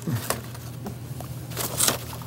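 Adhesive tape and construction paper being handled: faint crinkling with a few small ticks, and a brief louder crackle near the end.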